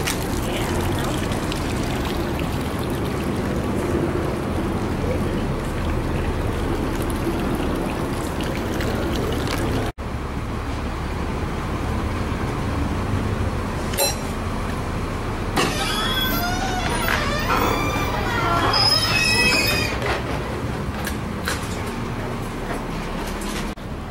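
Garden fountain splashing steadily into a stone pool. About ten seconds in the sound cuts to steady outdoor noise with faint voices for a few seconds.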